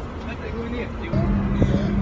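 Faint voices heard from inside a car stopped for an inspection, then a steady low hum that starts about a second in.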